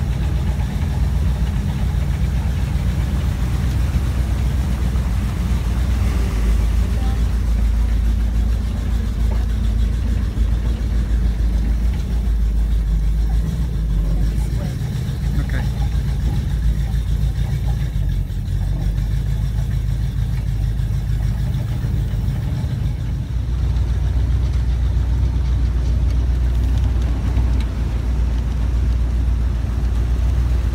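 Swamp buggy engine running steadily at low speed, a deep low drone that eases a little in the middle and grows louder again near the end.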